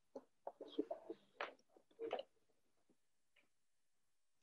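Faint bird calls: a short, irregular run of calls over the first two seconds or so, followed by a couple of soft ticks.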